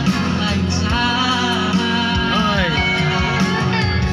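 A teenage boy singing a solo vocal into a microphone, with instrumental accompaniment; his voice slides down in pitch about two seconds in.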